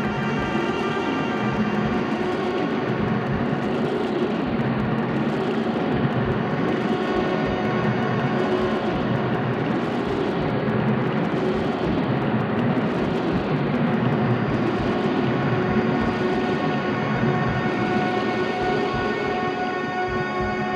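Live band playing a dense, droning instrumental passage with no singing: many steady held tones over a fast, rumbling low pulse.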